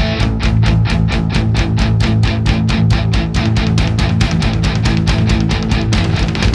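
Rock band recording: electric guitar and drums playing a loud, fast, even beat, about five hits a second.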